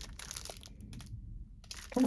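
Faint crinkling of plastic film wrapped around clear plastic covers as they are handled: a few short rustles, dropping almost to silence a little after the middle.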